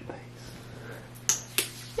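Two sharp clicks about a third of a second apart, near the end, over a faint steady hum.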